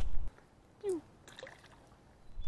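A faint, brief splash of a small largemouth bass dropped back into a pond, heard as a few soft ticks in near silence, after a low rumble on the microphone cuts off abruptly.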